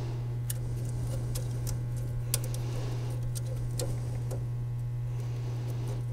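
Small screwdriver turning screws into the metal mounting bracket of a Seeburg jukebox mechanism, giving light, irregular clicks and ticks. A steady low electrical hum runs under it.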